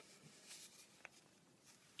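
Near silence, with a single faint tick about a second in.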